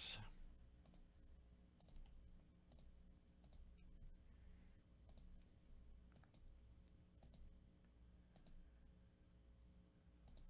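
Faint computer mouse clicks, a sharp click every second or so, over a low steady hum.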